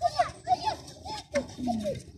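A young child's voice: a quick string of short, high wordless calls and squeals while playing.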